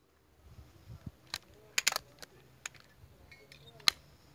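A handful of short, sharp clicks and taps over a faint background, a few close together in the middle and the sharpest one near the end.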